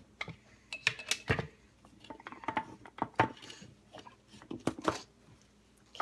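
Scattered sharp plastic clicks and knocks from handling a mini chopper's lid and bowl, with no motor running, several a second at times, in short clusters.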